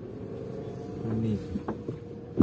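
A car heard from inside its cabin while moving slowly on a rough, muddy dirt road. It is a steady low hum of engine and road noise with one steady tone running through it.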